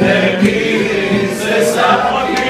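Several men singing together in chorus, live, over strummed stringed instruments.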